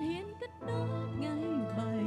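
A woman singing a slow song live into a microphone over sustained instrumental accompaniment. Her phrase ends with a short dip in the music about half a second in, then a new sung line begins over a steady bass.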